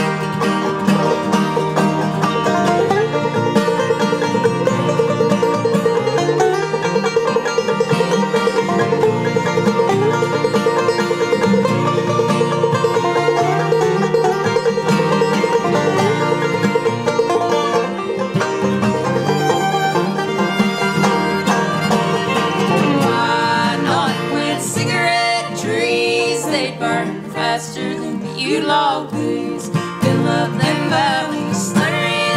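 A bluegrass string band of fiddle, banjo and acoustic guitar playing a tune together.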